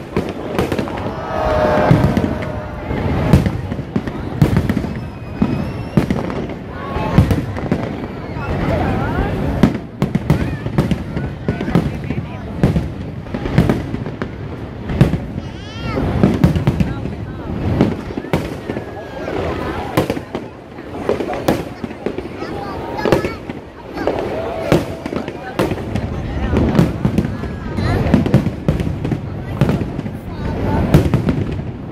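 Aerial fireworks display: shells bursting one after another in a dense, irregular barrage of bangs and crackles, with crowd voices chattering underneath.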